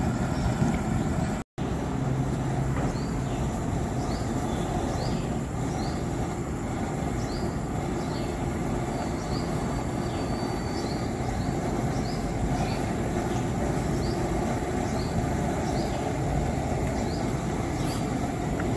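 Steady rushing roar of the gas burner under a large pot of simmering chicken kurma. Faint short high chirps repeat about once a second over it.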